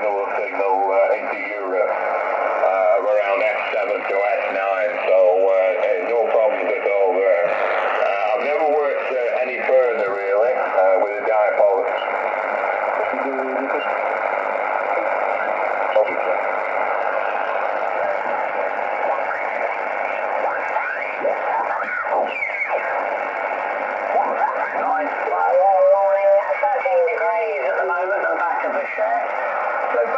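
Single-sideband amateur radio voices on the 40 m band, received by a Yaesu FT-818 and played through a small Bluetooth speaker: thin, narrow-band speech over steady background hiss. At times the voices slide in pitch as the radio is retuned across the band.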